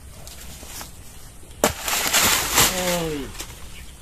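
A sharp knock, then about a second of loud rustling among dry banana leaves, followed by a man's short voiced sound that falls in pitch.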